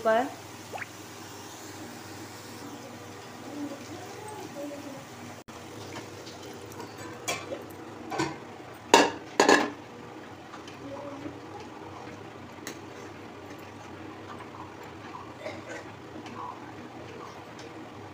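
Boiled kidney beans and water poured into a steel kadhai of fried masala and stirred, the steel ladle scraping and knocking against the pan. A cluster of sharp clatters comes about halfway through, over a steady low hiss.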